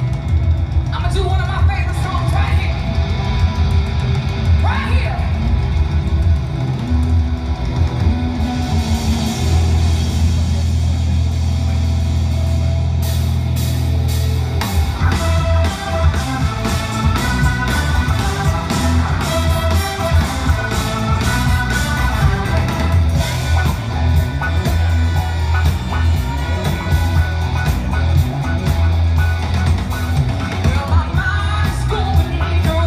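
Live rock-funk band playing loud, with a heavy bass line, electric guitar and drums; about halfway through the drums break into a fast, steady beat. Heard from a concert video played back on a screen and picked up by a phone.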